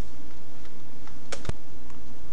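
Two sharp clicks close together about one and a half seconds in, over a steady hiss.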